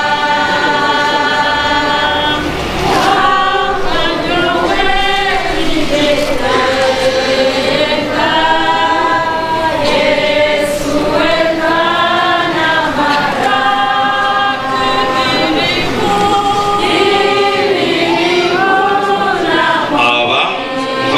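A choir singing, with long held notes that rise and fall in pitch.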